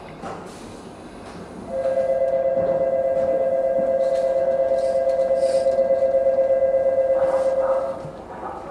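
Station platform departure bell sounding one steady two-note tone for about six seconds, starting about two seconds in and cutting off just before the end: the signal that the train is about to depart.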